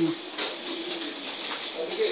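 Faint low bird cooing over a steady high-pitched whine.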